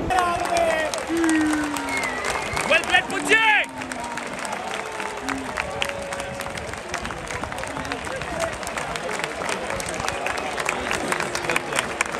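Large cricket stadium crowd: shouts and whoops in the first few seconds, then steady applause from many hands clapping.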